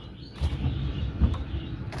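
Low knocks and handling noise from a hand working the small wooden door of a linden-wood birdcage, starting about half a second in.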